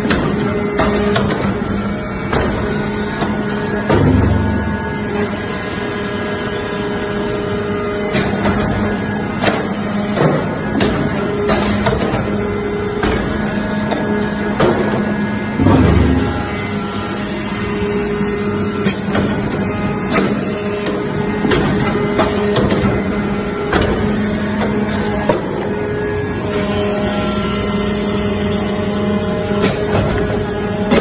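Hydraulic metal-chip briquetting press running: a steady hum from its hydraulic power unit, frequent clicks and clanks, and two heavy thumps about twelve seconds apart as the press works through its cycle.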